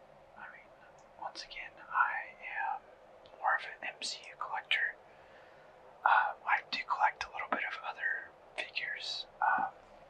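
A person whispering in short phrases with brief pauses, the words not made out.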